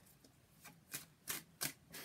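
Tarot cards being shuffled by hand: about four short, soft swishes of cards sliding against each other, starting around half a second in.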